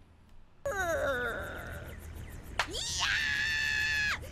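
Anime dialogue audio: a cartoonish wailing voice with falling pitch, then, from about three seconds in, a long high-pitched scream from a female character, cutting off sharply at the end.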